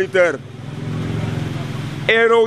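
A motor vehicle's engine running nearby: a steady low hum that swells in about half a second in and holds, following the last word of a man's speech.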